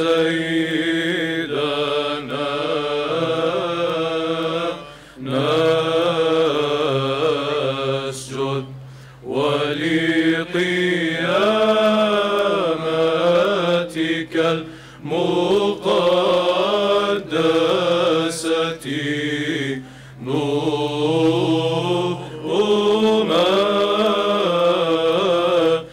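A mixed choir of young men and women sings Eastern Orthodox Byzantine chant over a steady low held drone note. The singing comes in several long phrases with brief pauses between them.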